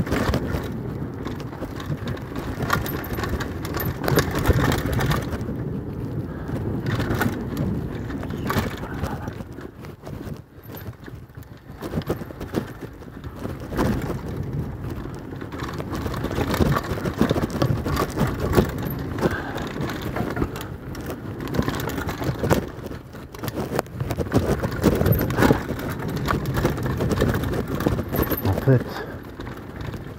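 Enduro mountain bike riding fast down a rough dirt and rock trail: a continuous rumble of tyres on the ground with frequent knocks and rattles as the bike takes the bumps.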